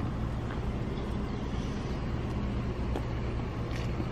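Steady low rumble of road traffic, even and unbroken.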